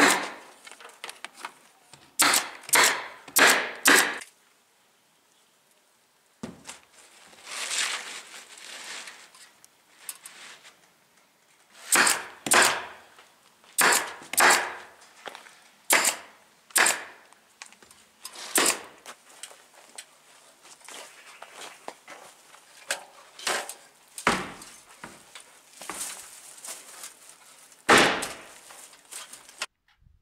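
Pneumatic fastening gun driving fasteners through asphalt roof shingles into plywood sheathing: sharp shots in quick runs of two to four, with pauses between runs. A softer rustling stretch comes about eight seconds in.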